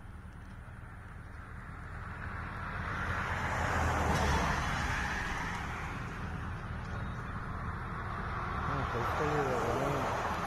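A car passing by on the road, its noise swelling to the loudest point about four seconds in and fading, then building again near the end.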